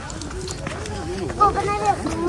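A person's voice making wordless or unclear vocal sounds, rising in pitch and strength about halfway through.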